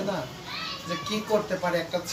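Speech: voices talking in a small room, with what may be children's voices among them.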